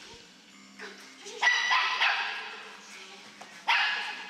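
A small dog barking twice, sharp and loud, each bark echoing and dying away in a large hall.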